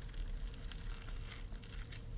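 Faint crunching and chewing as a bite is taken from a crispy deep-fried chicken sandwich on a grilled bun, over a low steady hum.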